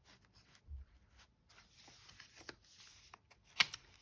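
Faint rustling and light clicks of paper pages and card inserts being handled and turned in a handmade paper journal, with one sharp tap near the end.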